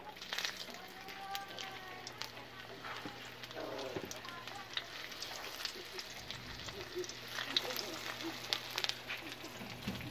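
Dried salted fish (daing) frying in hot oil in a wok: a steady sizzle with scattered crackling pops.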